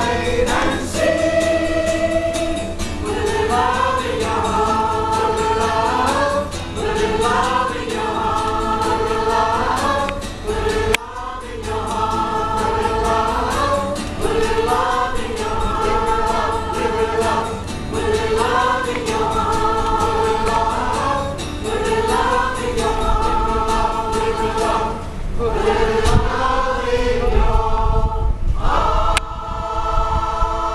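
Large amateur community rock choir singing together in short repeating phrases about every two seconds, accompanied by an acoustic guitar.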